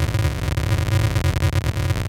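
Electronic music: a sustained, buzzing synthesizer chord over deep, heavy bass, pulsing rapidly.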